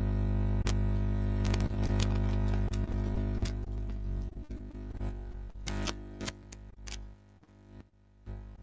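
A steady electrical buzz on an open phone line, with scattered clicks and crackles, cutting in suddenly and fading away over several seconds as the caller's line connects.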